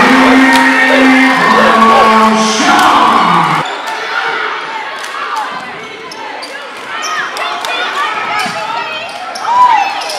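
Gym crowd noise at a basketball game, with held voice tones in the first few seconds. After a sudden change a few seconds in, a basketball bounces repeatedly on the hardwood court with crowd voices behind it.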